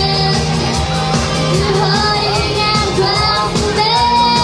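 Live pop-rock band: a young girl sings the lead into a microphone over electric guitars, bass and drums keeping a steady beat, amplified through a PA.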